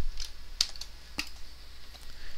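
A few separate computer keyboard keystrokes in the first second or so, over a faint low steady hum.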